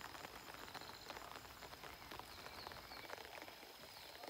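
Light rain pattering faintly, a dense spray of tiny ticks, with a thin steady high tone running under it.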